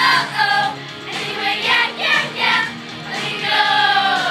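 Girls' show choir singing a pop song together with accompaniment, holding a long note near the end.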